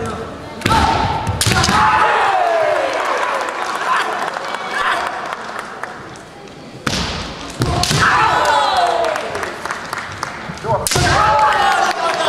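Kendo fencers' kiai: long yells that slide down in pitch, each set off by sharp impacts of bamboo shinai strikes and stamping on a wooden floor. This comes in three flurries: about a second in, around seven seconds in, and near the end.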